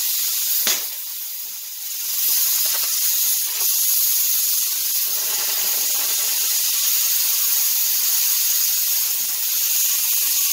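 Oxy-fuel cutting torch hissing steadily as it cuts through steel plate. There is a sharp click just under a second in, and the hiss drops briefly before it comes back at full strength.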